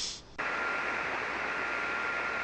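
Single-sideband shortwave receiver hiss on the 40-metre band: steady static cut off at the top like a narrow radio filter, coming up suddenly about half a second in as the radio goes back to receive, with a faint steady whistle running through it.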